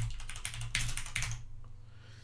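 Typing on a computer keyboard: a quick run of key clicks lasting about a second and a half.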